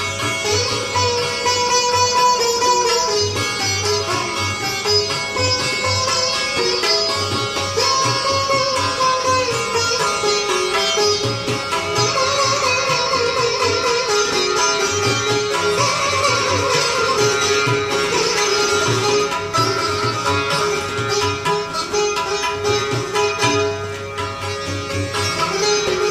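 Sitar playing a solo melody, with many notes bent in smooth glides, over a low tabla accompaniment.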